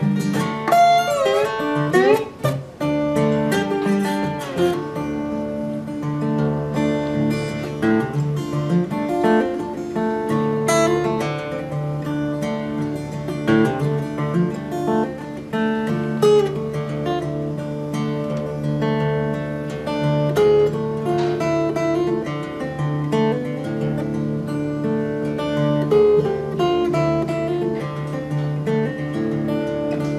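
Solo steel-string acoustic guitar played fingerstyle, an instrumental with picked melody notes over a sustained low bass note. A few gliding notes come in the first three seconds.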